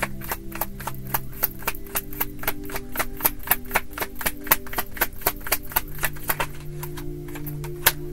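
A tarot deck shuffled by hand, the cards clicking and slapping against each other several times a second throughout, over soft steady background music.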